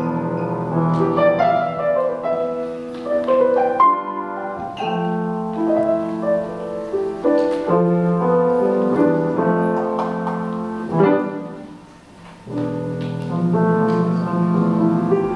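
Grand piano played solo: melodic runs over sustained low chords, with a brief lull about twelve seconds in before the playing resumes.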